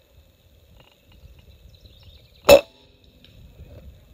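A single shot from an Umarex Gauntlet PCP air rifle: one short, sharp report about two and a half seconds in, with faint background noise around it.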